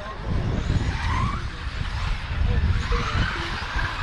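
Electric 4WD RC buggies racing: brushless motors whining up in pitch about a second in and again near three seconds, over a steady noisy rush.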